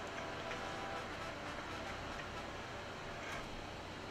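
Faint steady background hiss with a low hum, and no distinct event: room tone.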